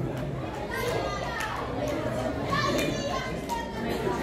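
Young trackside spectators' voices calling and shouting over a background of chatter, with louder calls about a second in and again toward the end.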